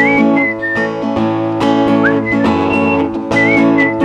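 Acoustic guitar strummed steadily while a person whistles a melody over it, a single clear tone that slides up into each held note.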